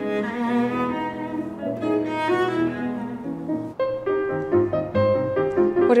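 Classical cello and piano duo playing: sustained bowed cello notes over piano, with the notes changing steadily throughout.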